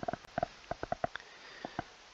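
Light, irregular clicking at the computer, about ten short clicks over two seconds.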